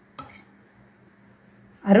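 A steel spoon knocks once lightly against a steel pan while stirring a thick tomato-garlic paste, then a faint steady hiss.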